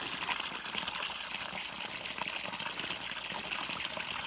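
Water gushing steadily from a PVC pipe spout and splashing into a shallow plastic trough.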